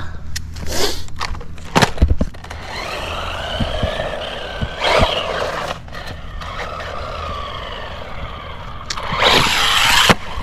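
A 1/16-scale brushless RC truck driving on rough asphalt: a few knocks and clatters in the first two seconds, then the motor's whine rising and falling as it speeds up and slows down, with tyre noise on the road. The loudest part is a rush of tyre and motor noise near the end.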